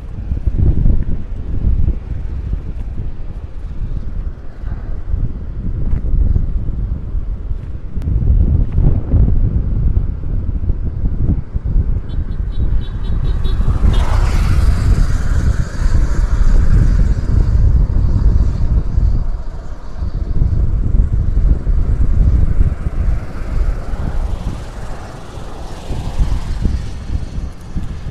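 Gusty wind buffeting the microphone as a low rumble that rises and falls, with road traffic on the highway; a broader, hissier rush comes through about halfway.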